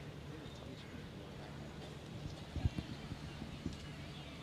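Faint open-air ground ambience, with a few short, soft low thuds in the second half.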